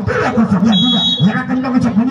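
A man commentating, with one short, steady, shrill whistle blast a little under a second in that lasts under a second. This fits a referee's whistle signalling the serve.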